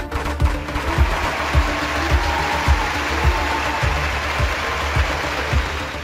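Background music with a steady low thump about twice a second, under a dense hissing, crackling noise that stops near the end: the auction page's celebration effect played with its confetti animation.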